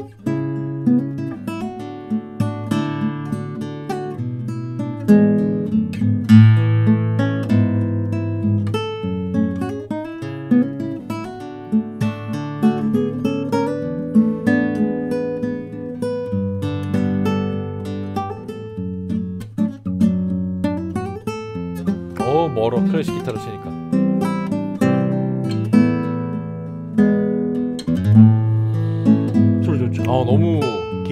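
Yamaha GC42S nylon-string classical guitar fingerpicked in a continuous solo piece, with melody and chords going throughout.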